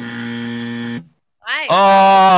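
A steady buzzing hum on one low pitch for about a second, cut off abruptly. After a short gap, a voice slides up into a long held note.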